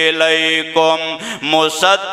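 A man's voice chanting a Quranic verse in melodic recitation (tilawat), holding long notes and gliding between them, with short breaks between phrases.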